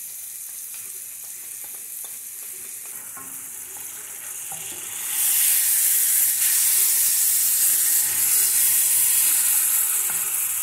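Sliced fresh mushrooms and garlic frying in butter and olive oil in a cast-iron skillet, a steady sizzle, with the scrape of a wooden spatula stirring them. The sizzle gets much louder about halfway through.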